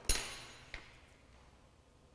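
A sharp clink of small glassware on a hard tabletop with a short ring, then a lighter click under a second later, as objects for a buttermilk slide smear are handled.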